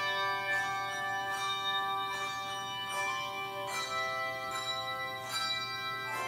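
Handbell choir playing a slow piece: chords of bells struck every second or so and left to ring, the notes overlapping.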